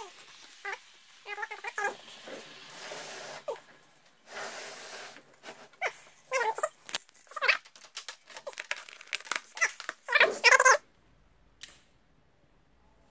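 A cat meowing several times, the loudest call near the end, with stretches of rustling noise between the calls.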